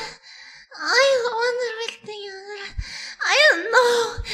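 A man moaning words in a high-pitched, drawn-out voice. There are two long moans whose pitch swoops up and down.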